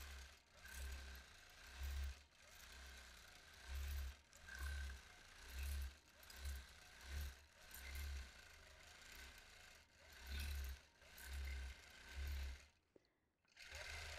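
Longarm quilting machine stitching in short, irregular bursts of about half a second each over a faint steady hum, running as the quilting is guided freehand. The sound cuts out completely for a moment near the end.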